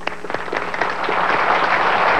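Audience applause building from a few scattered claps into dense clapping that grows louder.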